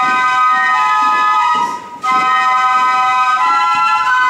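A flute band playing a slow tune in several-part harmony, held notes moving in steps, with a short break between phrases about two seconds in.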